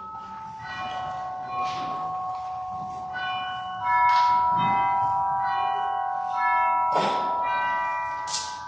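Pipe organ playing slow, held chords, with new notes coming in every second or two. A few brief noises sound over it, one near the end.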